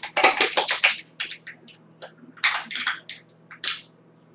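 Aluminium drink can being crushed by hand, crackling and crinkling in quick bursts through the first second and again from about two and a half seconds in, stopping just before the end.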